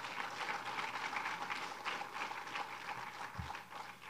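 Audience applauding, a dense patter of clapping that thins out near the end.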